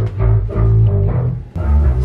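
Guitar track played back loud through studio monitor speakers and heard down a hallway, mostly deep sustained notes that change about one and a half seconds in. The playback sets snare drums stored nearby rattling in sympathy.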